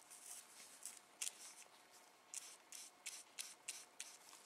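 Faint, near-silent scratching of a paintbrush's bristles dabbing into and working blobs of acrylic paint on paper, in a series of short, soft strokes.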